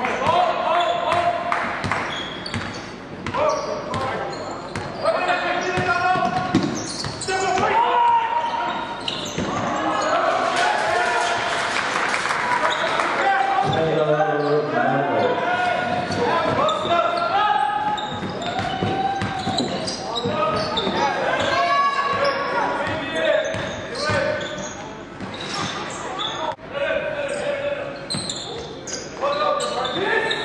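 Basketball game in a gym: a ball bouncing on the court with many short knocks, under the echoing voices and shouts of players and spectators.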